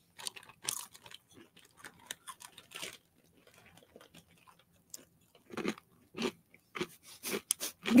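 Someone chewing a mouthful of crunchy snack nuts close to a microphone: an irregular run of sharp crunches.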